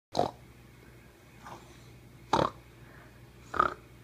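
A young child making short, noisy vocal sounds like grunts or snorts: three loud ones, near the start, a little past halfway and near the end, with a fainter one between.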